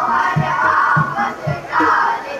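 A group of schoolchildren singing a Hindi song together in unison into microphones, with a steady low beat about twice a second underneath.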